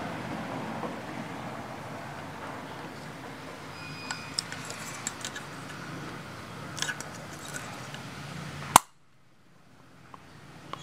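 Caulking gun pressing silicone from a cartridge, with a few small clicks of the trigger. Near the end comes one sharp click as the gun is decompressed so the silicone stops flowing.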